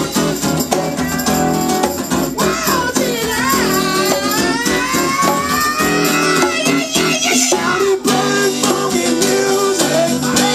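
A live band playing: strummed acoustic guitar and drum kit, with singing. Midway, a voice holds a long note that slides up and down in pitch.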